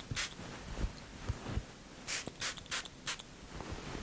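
Pump-spray bottle of heat-protecting hair shine mist spritzed onto damp hair: one short hiss near the start, then four quick spritzes in a row about two seconds in.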